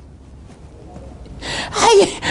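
A man's wordless vocal cry, pitched and wavering, that swells loudly about a second and a half in, after a stretch of faint background hiss.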